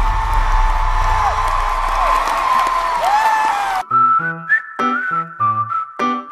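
Loud live pop-concert sound: crowd noise with a high held tone and sliding, whistle-like pitches over it. About four seconds in it cuts abruptly to clean, separate music of short stepping notes.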